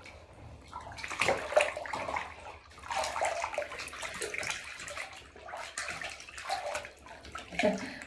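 Bath water splashing and sloshing in irregular bouts as a person washes in a bathtub.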